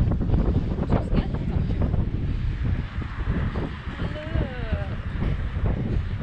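Wind buffeting the microphone: an irregular low rumble and gusting hiss with no steady tone.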